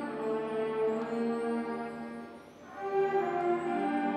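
School concert band of woodwinds and brass playing slow, long-held chords. The sound fades away briefly past the middle, then a new chord comes in.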